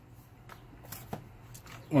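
A few faint clicks and light rattles from a plastic parts organizer box being handled, its lid and box shifting. Speech resumes right at the end.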